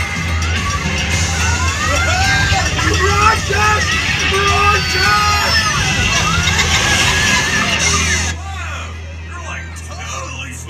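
Dark-ride show soundtrack: music mixed with many overlapping voices calling out, their pitches gliding up and down, over a steady low hum. The voices and music drop away suddenly about eight seconds in, leaving the hum and quieter sound.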